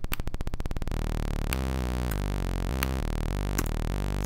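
Synthesized notes from a Max patch's random melody generator, stepping to a new random low-register pitch within a scale about three times a second. For the first second there is a rapid low buzz.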